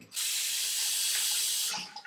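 Bathroom sink tap running in a steady hiss for about a second and a half, then stopping.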